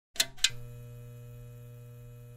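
Neon sign switching on: two sharp electric crackles in quick succession, then a steady electrical buzz of the lit tube.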